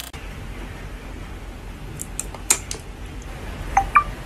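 A few light clicks and taps as a phone charger plug and cable are handled, over a steady low hum, with two short high tones near the end.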